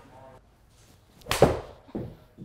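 A Titleist Concept 5-iron striking a golf ball off a hitting mat in an indoor simulator bay: one sharp crack of impact about two-thirds of the way through, followed by a smaller knock near the end.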